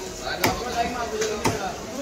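Large knife chopping through a fish into steaks on a wooden stump chopping block: two sharp strikes about a second apart, with voices in the background.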